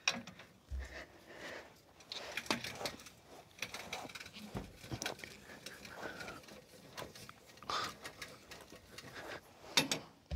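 A scissor jack being cranked under a snowplow frame, lifting it: faint, irregular metallic clicks and creaks as the plow mount tilts up.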